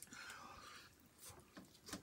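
Near silence with faint mouth sounds: a bite into a slice of pizza and the first chewing, a few soft clicks in the second half.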